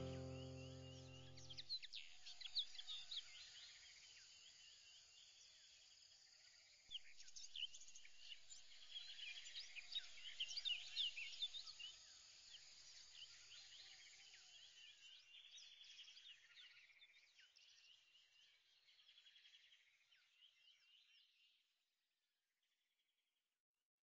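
A musical chord dies away in the first two seconds, then faint birds chirp over a soft hiss, thinning out and stopping just before the end.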